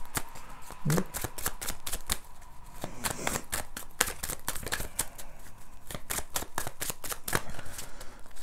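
A deck of tarot cards being shuffled by hand, an irregular run of quick card clicks and flutters.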